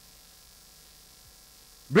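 A pause in speech filled with a faint, steady electrical mains hum. A man's voice starts again right at the end.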